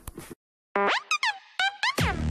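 The tail of a song cuts to a moment of dead silence, then a quick run of cartoon boing sound effects: springy tones sliding up and down, one after another.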